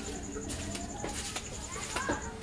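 Background ambience with faint bird calls, a few light knocks and a steady high-pitched pulsing chirp.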